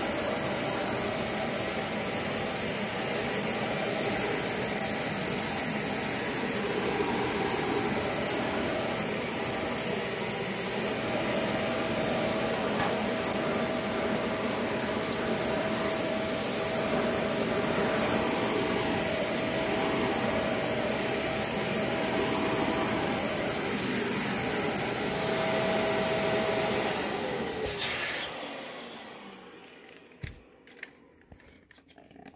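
Dyson cordless stick vacuum running on carpet: a steady rush of suction with a constant high motor whine. Near the end it is switched off, with a click, and the motor winds down with a falling pitch.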